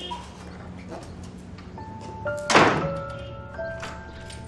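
Soft background music with held notes coming in just before the middle, and a single heavy thunk about two and a half seconds in as a wooden door is shut.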